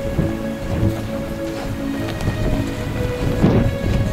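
Wind buffeting the camera microphone: a continuous low rumble with a stronger gust about three and a half seconds in, over music with held notes.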